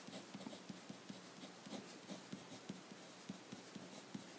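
Marker pen writing on paper: a run of short, faint scratching strokes as brackets, letters and signs are drawn.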